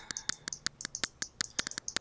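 Computer mouse clicking quickly and unevenly, several light clicks a second, as the eraser tool is worked over an image.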